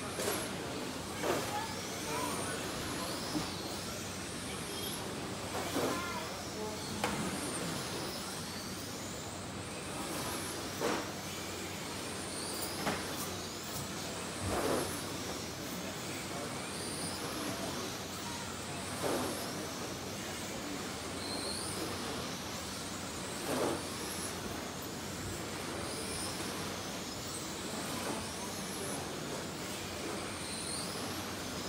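Radio-controlled touring cars racing on an indoor carpet track: their electric motors whine, rising in pitch again and again as the cars accelerate past, with a louder swell every few seconds as one goes by close.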